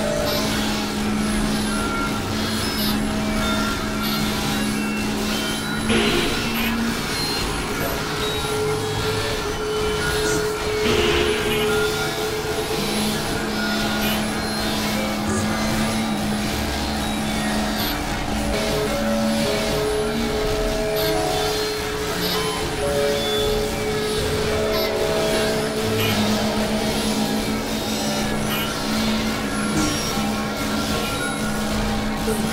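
Experimental synthesizer drone music: a dense, noisy, industrial texture under held tones that shift every few seconds, with brief noisy swells about six and eleven seconds in.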